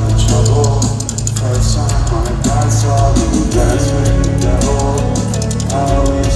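A live rock band playing loudly in an arena, with steady drum hits over a sustained bass and guitar.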